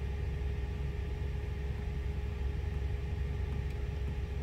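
Diesel engine of a 2018 International semi truck idling, a steady low rumble heard from inside the cab, with a faint steady hum over it.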